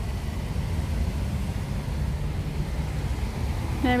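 Town-centre road traffic: a steady low engine rumble from nearby vehicles, among them a coach on the road beside the square.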